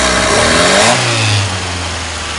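Fiat car engine revved by hand at the carburettor throttle: the revs sag at first, then pick up, and drop back to a steady idle about a second and a half in. The sag is an initial loss of power on opening the throttle, whose cause the owner has not found.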